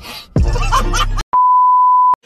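A short stretch of loud background music that cuts off about a second in, then a single steady high-pitched beep lasting under a second: the test-pattern tone of a TV colour-bars transition effect.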